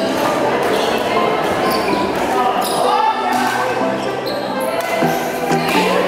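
Echoing indoor badminton hall: rackets striking shuttlecocks about once a second, over the voices of players on nearby courts.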